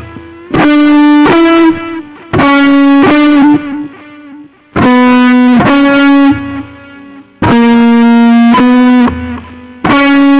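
Electric guitar through distortion playing a single-note lead line: short phrases of two or three held, sustaining notes, separated by brief pauses where the sound drops away.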